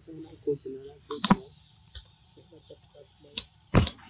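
A low voice briefly in the first second, then two sharp cracks, one about a second in and one just before the end, the second the loudest.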